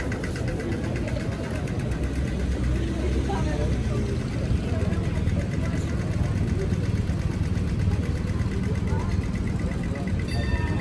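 Busy city street ambience: crowd chatter over a low traffic rumble, with the rapid ticking of a pedestrian crossing signal in its walk phase, clearest near the start and again in the last few seconds.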